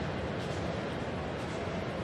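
Steady stadium background noise of a crowd, an even hum with no distinct impacts or calls.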